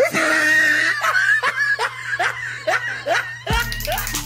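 A person laughing hard in a run of short, repeated bursts. Background music starts near the end.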